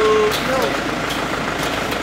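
Steady roadside traffic noise from car and motorbike engines running and passing. A short held voice sound comes at the very start.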